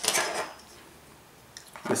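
A steel ruler is picked up and set against a pen on a tabletop: a short metallic scrape and clatter, then quiet.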